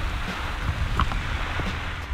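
Steady rushing hiss of a lake fountain's tall water jet spraying and falling back onto the water, over a low rumble of wind on the microphone.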